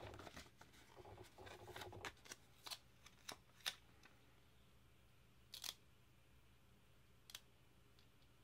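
Faint rustling and a few soft clicks from a paper sticker sheet being handled and a sticker being placed onto a planner page, otherwise near silence.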